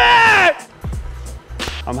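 A man's long, drawn-out excited shout, held on a steady pitch and breaking off about half a second in. Faint background music follows.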